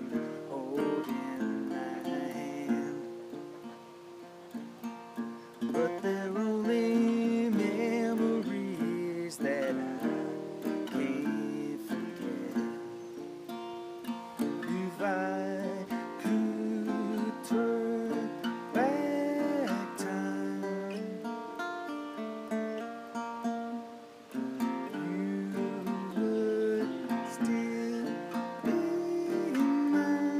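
Recording King ROS-9 acoustic guitar strummed with a capo on, with a man singing over it. About two-thirds of the way through there is one long held vocal note.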